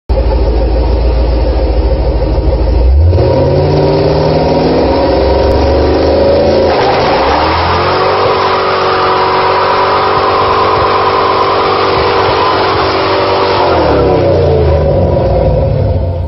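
Chevy LM7 5.3-litre V8 swapped into a 1992 Nissan 240SX, running at a low rumble and then revved up hard about three seconds in. It is held at high rpm for several seconds with the rear wheels spinning in a burnout, then drops back near the end.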